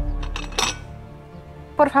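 Ceramic plates clattering, with a sharp clink about half a second in that dies away, over quiet film music.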